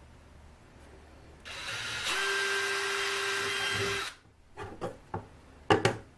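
Cordless drill running at a steady pitch for about two and a half seconds, boring a mounting hole through a thin wooden plate, then stopping suddenly. A few sharp knocks follow near the end.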